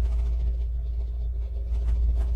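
Steady low rumble with a faint hum, unchanging throughout.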